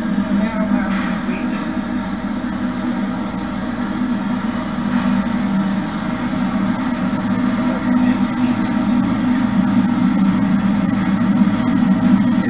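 A steady droning hum with a hiss of noise over it, unbroken and even in level throughout, played back from a phone video.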